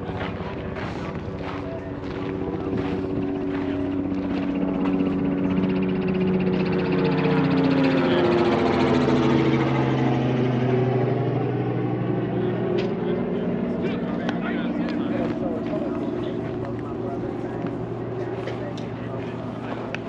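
An aircraft passing overhead: its engine drone builds, is loudest about halfway through, drops in pitch as it goes by and then fades.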